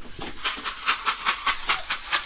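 A bag of candy being shaken in the hand, making a quick rattling rustle of about seven shakes a second.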